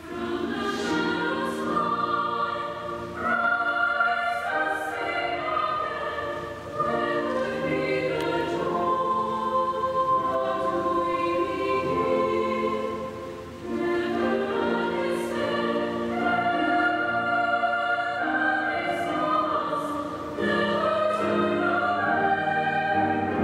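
Mixed choir of men and women singing in several-part harmony, with sustained notes and phrases that start afresh every few seconds.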